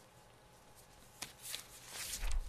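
Quiet room tone with faint handling noises: a soft click about a second in, then brief rustling toward the end.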